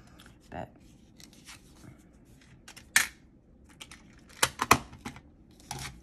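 Metal watercolor palette tins and a paper swatch card being handled and moved on a table: a few sharp clicks and clacks, a loud one about three seconds in and a quick cluster around four and a half seconds.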